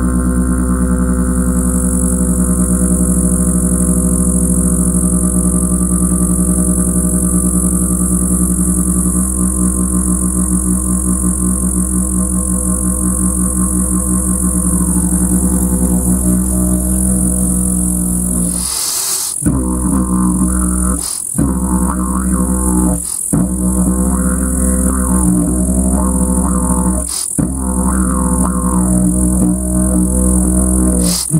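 Homemade box didgeridoo of glued wood panels and spruce strips, played as a steady low drone rich in overtones. A little past the middle the drone breaks off briefly. It then carries on with short breaks every few seconds and more shifting upper overtones.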